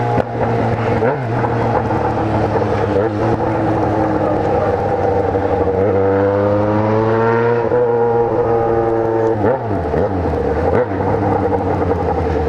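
Yamaha XJ6 inline-four engine heard from on the bike while riding, running at steady revs over wind rush. About six seconds in it rises in pitch as the bike accelerates, then drops sharply near eight seconds at a gear change and dips once more soon after.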